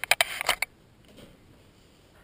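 Handling noise: a quick cluster of sharp clicks and rustles in the first half-second or so, then only faint room tone.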